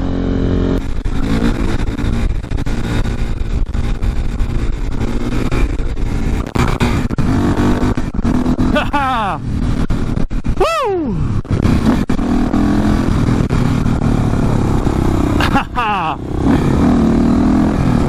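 KTM 450 supermoto's single-cylinder four-stroke engine running under way, with wind rushing past a helmet-mounted microphone. The engine note sweeps up and falls back a few times, around the middle and near the end.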